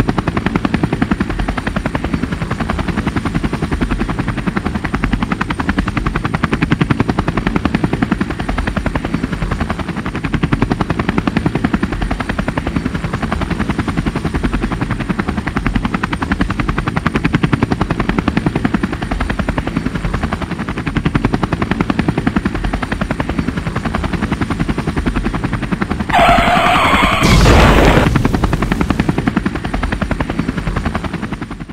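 Helicopter sound effect: the rotor chops steadily and fast. A few seconds before the end comes a short, loud crash with a brief screech at its start.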